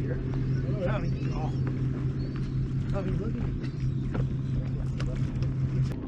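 Boat engine idling, a steady low hum, with faint voices of people aboard.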